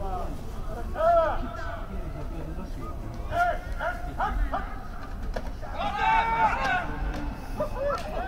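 Men's voices shouting on an American football field as a play is run: several short calls, then a longer held shout about six seconds in.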